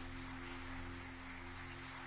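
Background music: a steady sustained chord over a hiss.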